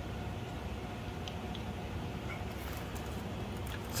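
Steady low background hum with a faint steady tone, and two faint light ticks about a second and a half in.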